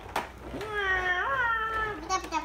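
A child's voice holding one long, drawn-out vocal sound that steps up in pitch about halfway through, after a short knock near the start.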